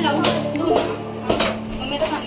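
Background music with a sustained low note, over a few sharp pops of plastic bubble wrap being pressed by hand.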